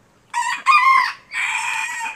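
Rooster crowing loudly: two short notes, then a long drawn-out final note, starting about a third of a second in.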